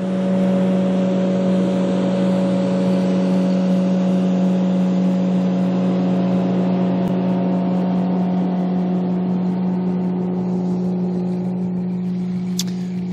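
Motorboat engine running at speed: a steady, even drone that eases off slightly near the end.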